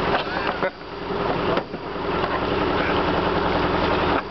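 A boat's engine running steadily as the boat moves up a narrow river, with a short dip in level twice in the first two seconds.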